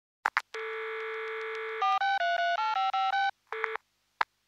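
Telephone sounds: two clicks of a handset being picked up, a steady buzzing dial tone, then a quick run of about nine touch-tone keypad beeps as a number is dialled.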